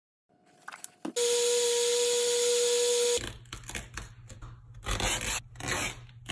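Electric dual-action polisher running steadily with a constant whine for about two seconds, then stopping abruptly. Scattered rubbing and handling knocks follow over a low hum.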